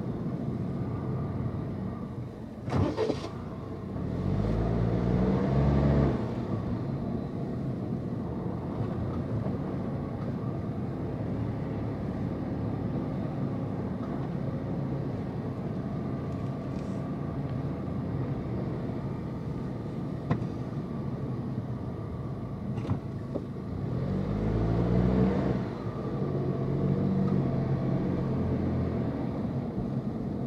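A car driving slowly, its engine and tyres making a steady low rumble. The engine pitch rises twice as it accelerates, about four seconds in and again near twenty-five seconds, and there is a short knock about three seconds in.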